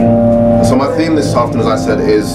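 Held keyboard chords playing in the background, with a man starting to speak over them into a microphone a little under a second in.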